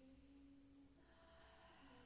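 Near silence: room tone with faint held tones that shift to a higher pitch about a second in.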